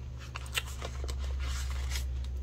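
Paper dollar bills rustling and flicking as a stack is handled, in a series of short, irregular crisp clicks, over a steady low hum.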